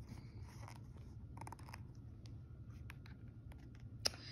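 Faint paper rustling and soft scattered clicks as a picture book's page is handled and turned, over a low steady hum.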